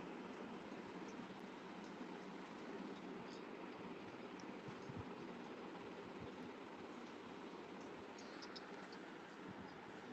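Faint steady hiss of open-microphone background noise coming through a video-call connection, with a few tiny faint ticks.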